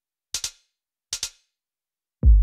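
Two computer mouse clicks about a second apart, each a quick press-and-release double tick, toggling steps on and off in a drum step-sequencer grid.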